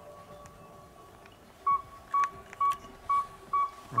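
Northern saw-whet owl's tooting advertising call: a long, even series of single whistled toots, about two a second, starting a little under two seconds in.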